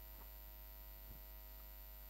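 Very quiet, steady electrical mains hum, with two faint small ticks.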